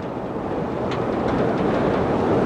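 Steady rushing rumble from a camel race track as a race gets under way, the running field and the vehicles moving alongside; it grows a little louder.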